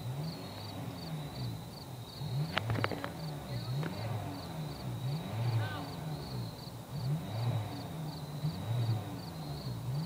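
A car engine on a stuck car, revving up and dropping back over and over, about once a second, as the driver tries to rock it free. The revving is hard enough that an onlooker thinks the transmission may be fried. A few sharp clicks come about three seconds in.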